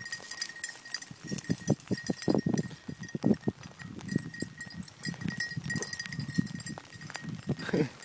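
Footsteps crunching and brushing through tall dry grass and weeds while walking, an irregular run of thuds and crackles. A faint steady high tone sounds underneath.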